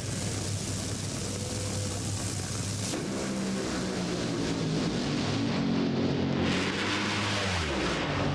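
Two Top Fuel dragsters' supercharged nitromethane V8s launching side by side and running at full throttle down the quarter-mile. The loud engine note builds about three seconds in and falls away near the end as they cross the finish line.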